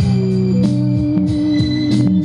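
Music from a radio station playing through the speakers of a Grundig Majestic Council console radio, with held low notes.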